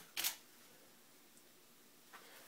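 A sharp click, then a camera shutter firing about a quarter second later as the Pluto Trigger runs a single water-drop test shot.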